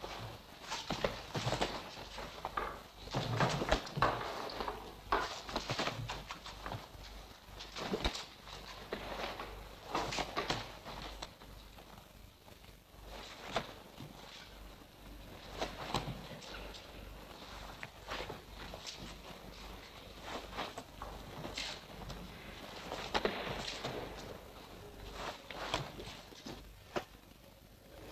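Irregular thuds and scuffs of feet stepping and shifting on a gym floor, with blocks and kicks landing, during a paired sambo drill of defences against kicks and punches. A steady low hum runs underneath.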